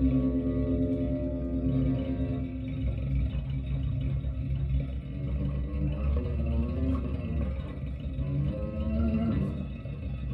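Solo electric guitar played through an amplifier: long, overlapping held notes and low tones, with notes bending in pitch near the end.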